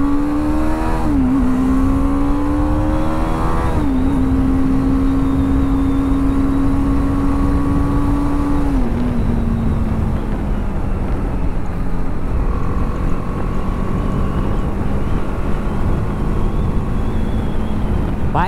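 BMW G 310 R's 313 cc single-cylinder engine with its stock exhaust, heard from the saddle while accelerating. The engine note climbs and drops sharply twice as the rider shifts up, about a second in and again about four seconds in. It then holds steady and steps down a little before halfway to a lower, even note as the bike cruises at around 90 km/h.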